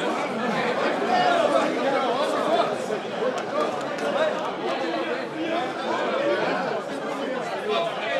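Crowd chatter: many people talking at once in overlapping voices as they greet one another.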